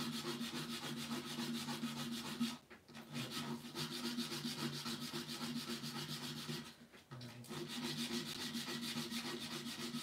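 Abrasive sanding pad rubbed by hand over carved, fluted wood: a steady rasping scrub that stops for a moment twice, about two and a half seconds in and again about seven seconds in.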